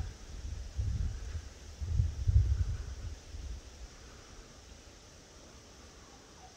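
Wind buffeting the microphone in irregular low rumbles during the first three seconds, then fading to a faint, steady outdoor hiss.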